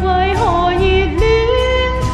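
A woman singing a Cantopop ballad in Cantonese, her voice sliding between notes, over a pop backing track with drums.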